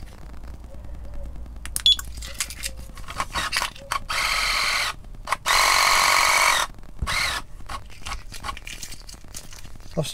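Raymarine ST1000 tillerpilot's electric drive motor running twice, each time a steady whine lasting about a second, as it drives the push rod under key-fob remote control. A few sharp clicks come before and after.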